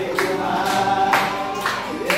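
Several men singing together to a strummed acoustic guitar, with hand claps keeping the beat.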